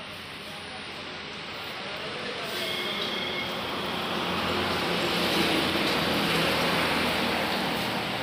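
A road vehicle passing on the highway, its engine and tyre noise building steadily for several seconds and loudest near the end.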